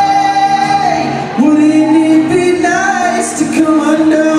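A man sings live to his own acoustic guitar. A long held note ends about a second in, and after a brief dip a new, lower sung line begins.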